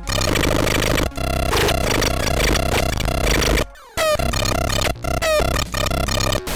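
Homemade generative drum machine playing two of its algorithmic drum sounds summed together, which makes a dense, harsh electronic noise. The sounds are mixed in a really weird way, more a mix of the algorithms than of the sounds. It breaks off just before four seconds in, then comes back with quick falling pitch sweeps.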